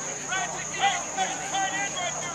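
Indistinct voices speaking in short bursts, not clear enough to make out words, over a steady high-pitched drone.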